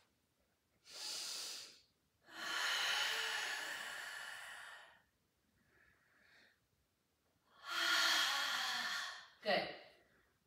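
A woman breathing hard, close to the microphone, paced to a Pilates reverse ab curl. There is a short breath, then a longer one that fades away, a faint one, and another strong breath near the end.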